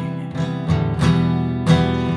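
Acoustic guitar strumming chords, several strokes ringing on into each other.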